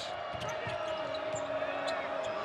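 A basketball being dribbled on the hardwood arena court, under the steady noise of a large indoor crowd with a held note running through it.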